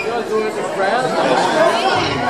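Audience chatter: many overlapping voices talking and calling out at once, with no music playing.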